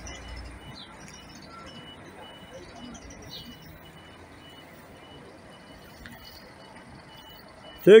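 Mercedes-Benz coach's diesel engine running low and faint as the coach pulls away and turns. A faint high beep repeats about twice a second.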